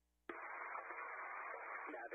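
A click about a third of a second in, then the steady hiss of an open radio voice channel, cut off above the voice range like a phone line, with no words yet.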